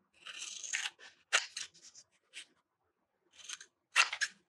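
Scissors cutting through a paper print: one longer cut in the first second, then a quick run of short snips, a pause, and more snips near the end, the last one the loudest.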